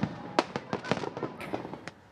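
Fireworks and firecrackers popping in an irregular series of sharp bangs, the loudest right at the start and about half a second in, dying away toward the end.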